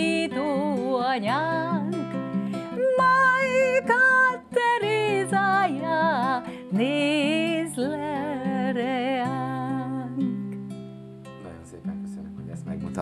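A woman singing with vibrato, accompanying herself on a nylon-string classical guitar. Her voice stops about ten seconds in, and the last guitar chord rings on and fades.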